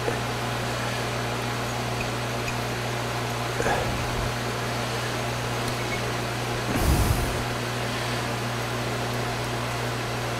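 Metal lathe running at a steady speed with a constant hum while a parting blade takes a light cut on the end of the spinning steel part, lubricated with cutting oil. A brief louder swell about seven seconds in.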